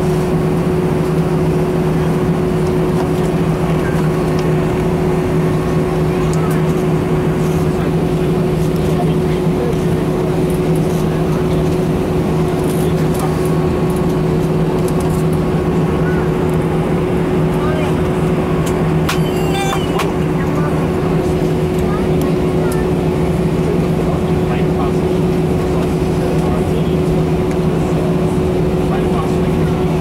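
Steady drone inside an Airbus A319 cabin as the airliner taxis with its jet engines at idle, a constant low hum with a steadier tone above it. A brief rattle of clicks about two-thirds of the way through.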